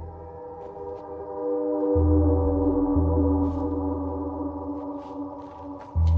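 Dark ambient film score: sustained, gong-like ringing tones at several pitches that swell about two seconds in, over a deep bass drone that drops out and returns. A few faint sharp clicks sit on top.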